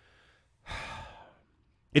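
A man's sigh close to the microphone: a breathy exhale of under a second that fades away, a sign of exasperation.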